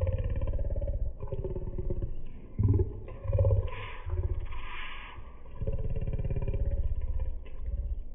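A man talking in a low, boomy voice, in phrases with short pauses between them.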